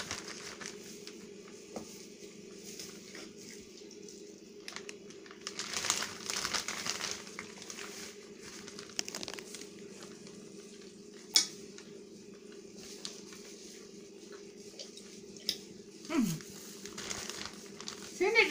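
Clear plastic freezer bag crinkling and rustling in irregular spells as grilled eggplant, peppers and tomatoes are packed into it, with a few sharp clicks, the sharpest about eleven seconds in. A steady low hum runs underneath.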